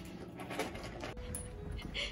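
Dog whimpering and panting while moving about.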